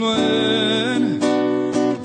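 A live worship song: acoustic guitar strummed under long held sung notes, with a couple of strums standing out near the middle and toward the end.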